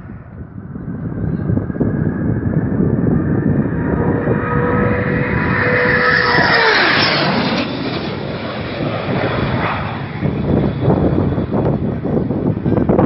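FMA IA-63 Pampa III jet trainer making a low, fast pass: the noise of its turbofan builds for several seconds, and its whine drops sharply in pitch as it goes by about six and a half seconds in. The roar then eases off, with wind on the microphone near the end.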